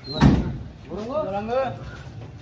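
A single loud knock on the metal body of a police van as men climb into its back, followed by a man's short call.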